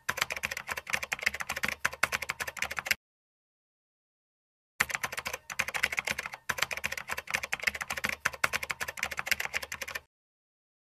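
Typing sound effect: rapid, uneven key clicks as text is typed onto the screen. The clicks stop dead about three seconds in, resume after a pause of nearly two seconds, and cut off abruptly at the end.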